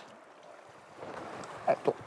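Steady rush of a fast-flowing river, a soft even hiss that grows a little louder about a second in. A man's voice starts just before the end.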